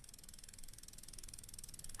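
Faint, rapid, evenly spaced ticking like a ratchet or clockwork mechanism, over a low hiss.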